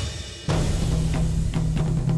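Dramatic background score led by drums. After a brief dip, a louder section with a steady low note and repeated drum hits starts suddenly about half a second in.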